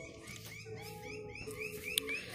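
An animal's chirping call repeated evenly, about four short chirps a second, with a faint held tone beneath it in the middle.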